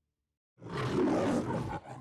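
The MGM studio logo's lion roar: a recorded lion roaring loudly for a little over a second, starting about half a second in after silence and cutting off near the end, where soft orchestral music begins.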